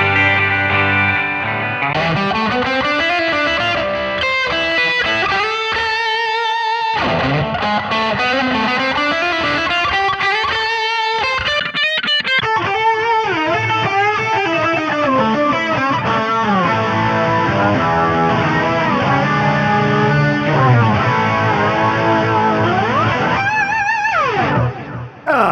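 Electric guitar played through a Boss GT-1000CORE multi-effects processor, with the patch changed from a clean jazz sound to shoegaze and overtone-lead presets. Notes ring on and overlap with heavy delay, and many slide up and down in pitch.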